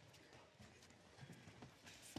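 Near silence, with a few faint soft taps.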